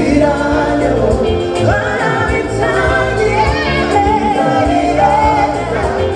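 Live band music with a woman singing lead into a microphone, backed by other singers, keyboards, bass and drums.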